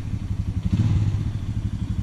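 ATV engine running steadily as the quad rides along, a low, fast-pulsing engine note.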